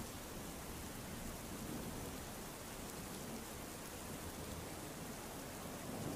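Steady rain falling, an even hiss with no distinct events.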